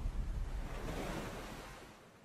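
The tail of a logo intro sound effect: a rushing, surf-like whoosh with a low rumble that fades away steadily.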